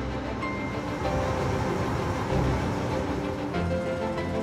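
Background music over the low running of a diesel shunting locomotive as it comes into the shed.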